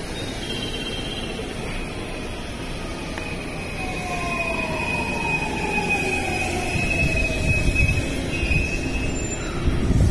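A JR West 223 series 2000 and 225 series 100 electric train pulling into the platform and braking. The traction motors' electric whine falls slowly in pitch under a high steady squeal. The rumble of wheels on rail grows louder in the second half as the cars roll past.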